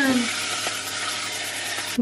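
Food frying in a pan, a steady sizzling hiss, with a woman's last word trailing off just at the start.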